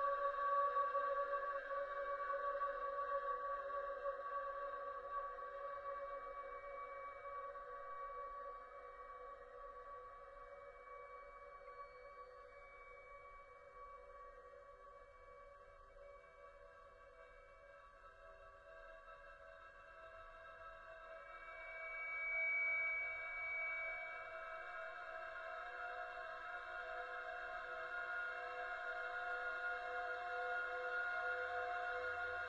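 Contemporary classical chamber music: several long, sustained tones held together. They fade slowly to very soft by the middle, a brief high note stands out about two-thirds of the way through, and the sound then swells again toward the end.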